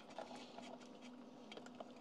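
Faint rustling and a few light clicks of BNC cables being gathered up, over a steady faint hum.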